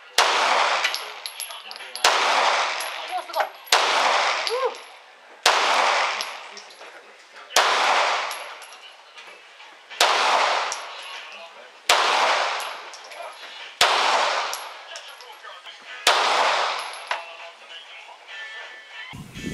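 Semi-automatic pistol fired nine times at a slow, steady pace, about one shot every two seconds, each shot followed by a long echoing decay.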